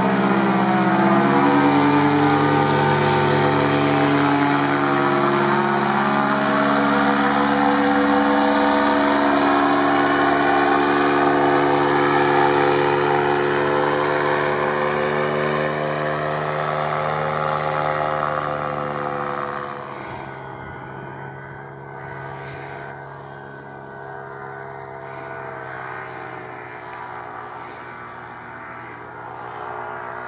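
Paramotor engine and propeller droning in flight, its pitch shifting as it passes overhead. About two-thirds of the way through it drops noticeably in loudness as it moves away.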